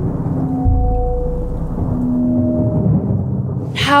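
Thunder rolling over steady rain, with a new roll of thunder starting just under a second in, beneath a few long held musical notes.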